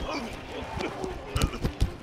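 American football linemen engaging at the snap: shoulder pads and helmets clash in a quick run of thuds in the second half, with short grunts and calls before them.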